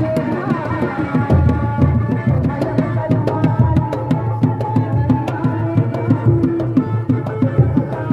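Traditional kuda lumping accompaniment music: hand drums playing a busy rhythm of sharp slaps and deep low strokes, under a sustained, wavering melody line.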